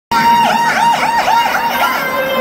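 Siren sound effect over a concert PA: a high tone that swoops down and back up about four times a second.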